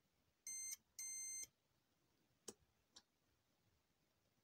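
A DT9205A digital multimeter's continuity buzzer beeps twice, a short beep and then a slightly longer one, as the probes touch the car window switch's contacts: the contact being tested conducts. Two faint clicks follow near the middle.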